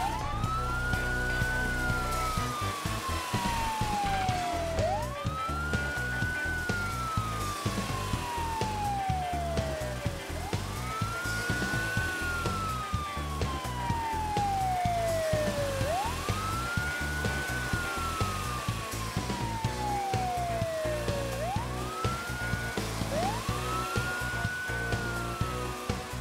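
Police siren wailing in a slow repeating cycle: each wail rises quickly, then falls slowly over about five seconds, over quiet background music.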